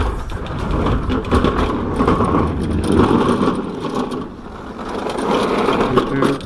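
Walk-behind push mower being rolled out of an enclosed trailer: its wheels rumbling and the mower rattling across the wooden trailer floor and down the ramp onto pavement. The sound eases off about four seconds in, then picks up again.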